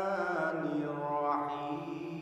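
A man's solo voice chanting Quranic recitation (tilawat) through a microphone, in long held, ornamented notes: one note fades about half a second in and a new phrase climbs in pitch just past the middle.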